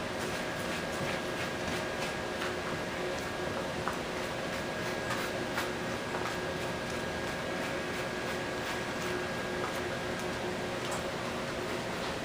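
Faint, irregular scratching of a metal fork scraping cooked spaghetti squash strands out of the shell, over a steady background hum.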